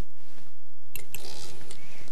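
A few short sharp clicks from a Professional Freehander quilting machine as its one-shot takes a single stitch to bring up the bobbin thread: one at the start, then two close together about a second in, over a steady low hiss.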